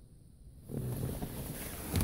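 Near silence, then from under a second in a steady rustling handling noise as the phone camera is moved about by hand.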